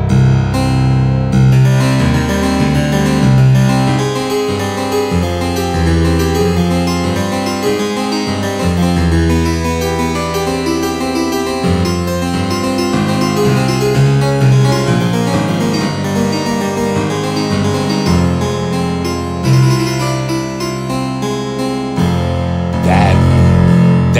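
A sampled 1766 Jacob Kirkman English harpsichord played on its lower eight-foot stop: a continuous passage of bass octaves and fifths under chords, with the bass changing every couple of seconds.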